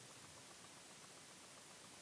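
Near silence: faint, even hiss of room tone.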